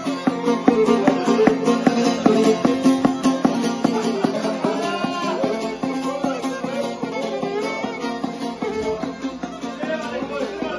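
A violin and a long-necked plucked folk lute playing a lively kolo dance tune together: the fiddle carries a sliding, ornamented melody over the lute's steady strummed rhythm.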